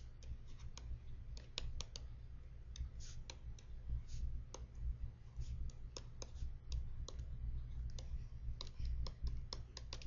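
Tablet-PC stylus tapping and clicking on the screen during handwriting: a faint, irregular run of small clicks, a few a second, over a steady low hum.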